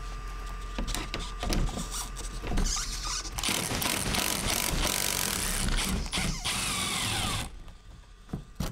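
A few handling clicks, then about three and a half seconds in a cordless impact driver with a 10 mm socket runs for about four seconds, hammering out a rusted bumper bolt whose nut is held in pliers. It stops about half a second before the end.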